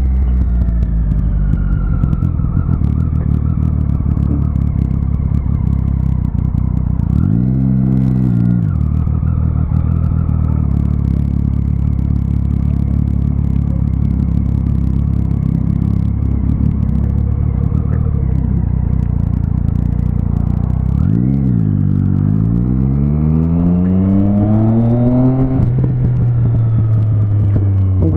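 Motorcycle engine running steadily under way, with a short rev about a quarter of the way in and a climbing pull as it accelerates toward the end.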